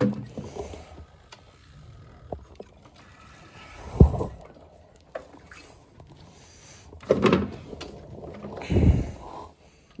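A rotary carpet-cleaning floor machine being handled with its motor off: one heavy thump about four seconds in as it is tipped over, then further bumps and rustling near seven and nine seconds as the machine is turned to bring the bonnet pad into view.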